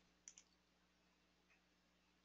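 Near silence: faint room tone with a couple of faint short clicks shortly after the start.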